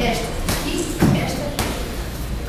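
Boxing gloves punching focus mitts: three padded thuds about half a second apart, the middle one the loudest.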